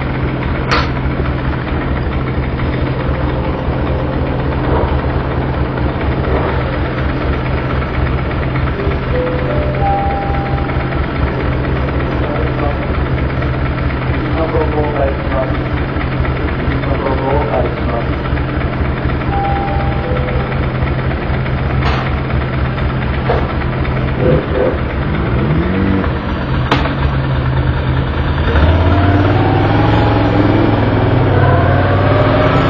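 Moto Guzzi V11 Ballabio's air-cooled transverse V-twin idling with a steady, lumpy beat, then revving up in rising pulls over the last few seconds as the bike sets off. A few sharp clicks are heard along the way.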